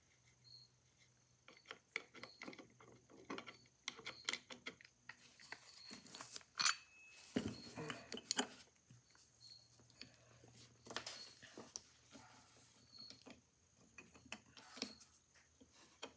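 Quiet, irregular metallic clicks and clinks of small steel and brass parts as a Cheney phonograph motor's governor and spindle bearing are worked loose from the cast frame by hand, with a few louder knocks around the middle.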